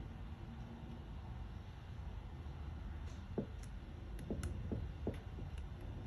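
Faint small clicks and ticks of fingers fitting a little spring between two Keihin CV carburetor bodies: one sharp click about halfway through and several more close together near the end, over a steady low hum.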